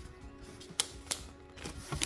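A few light clicks and taps of cardboard and plastic packaging being handled, over faint held music tones.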